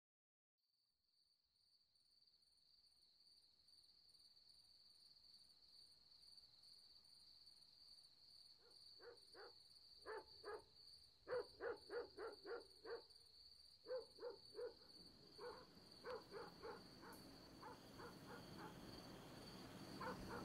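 Faint outdoor ambience fading up from silence: a steady high-pitched tone throughout, and from about nine seconds in, runs of short, repeated animal calls, several a second, in bursts of two to six.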